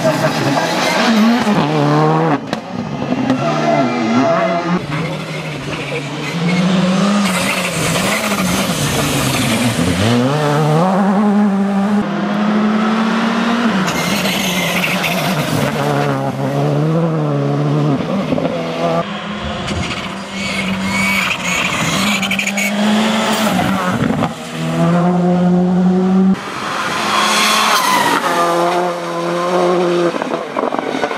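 A Škoda Fabia R5 rally car's 1.6-litre turbocharged four-cylinder engine driven hard through several passes. Its pitch repeatedly climbs and drops back at each gear change.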